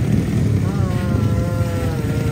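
Motorcycle engines idling in a steady low rumble in a drag-race staging lane, with a long, steady held tone rising in over it a little before the middle.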